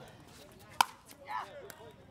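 A single sharp pock of a pickleball paddle striking the plastic ball, a little under a second in. About half a second later comes a brief wavering squeak.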